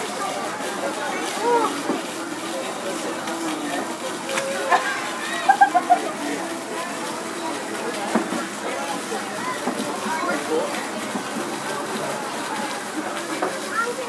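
Indistinct voices of people talking in the background over a steady noise, with no clear words.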